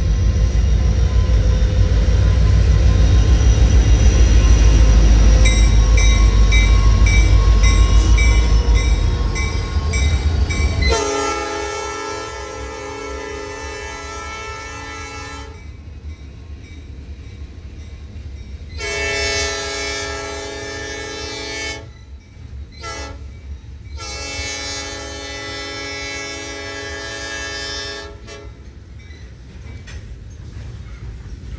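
Norfolk Southern GP60 diesel locomotives rumble past at close range while a bell rings about twice a second. Once they are by, the lead unit's air horn sounds long, long, short, long, the grade-crossing signal, fading as the train pulls away.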